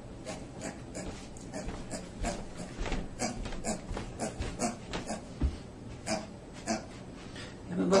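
A small pet animal snorting and sniffing in short sharp snorts, about three or four a second.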